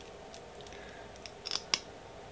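Small plastic clicks from a liquid lipstick tube being uncapped and its applicator wand pulled out, with long nails tapping on the plastic; two sharper clicks close together near the end are the loudest.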